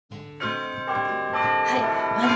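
Bell-like chiming music, a new ringing note struck about every half second, each note left to ring on under the next.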